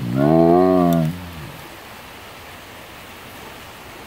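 White tiger giving one long moaning yowl, a "yell-moo", about a second and a half long, rising then falling in pitch. It is his complaint after being given a fright.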